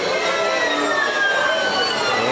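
Steady, dense din aboard a turning carousel: ride and crowd noise, with a thin high tone that slides slowly downward around the middle.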